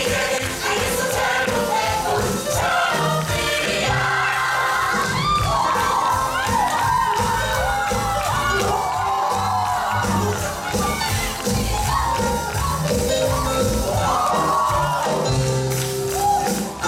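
An upbeat stage-musical number with a live-sounding backing track and singing, over audience crowd noise and cheering.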